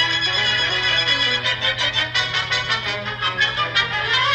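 Instrumental music; about a second and a half in it settles into quick, evenly repeated notes.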